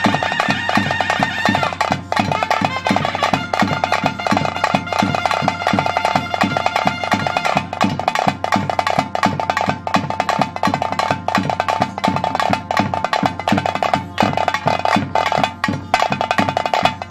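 Bhoota kola ritual music: drums beaten in a fast, steady rhythm, with a reed pipe holding long notes over roughly the first half.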